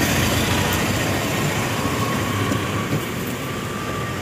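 Steady rumbling noise of vehicle traffic passing on the street, with no clear single event.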